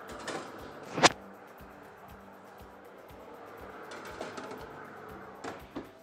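A metal baking tray gives one sharp, loud knock about a second in as it is slid onto a fan oven's shelf, followed by a couple of lighter knocks near the end. Background music plays throughout.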